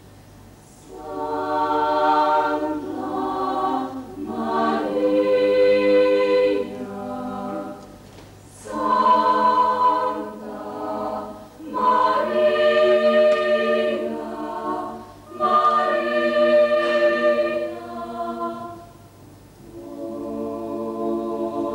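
A school chamber choir singing unaccompanied, in phrases that swell and fall away with short breaths between them.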